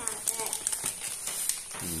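Plastic snack packets crinkling and rustling as they are handled and pulled from a cabinet shelf, a run of light crackles.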